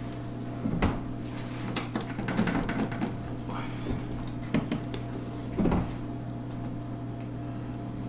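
Rubber spatula scraping thick cake batter out of a stainless steel mixing bowl, with a few sharp knocks of spatula and bowl, about a second in and twice more around the middle, and soft scraping between.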